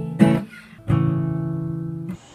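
Strummed acoustic guitar from a song: a short chord, then another struck about a second in that rings out and slowly fades.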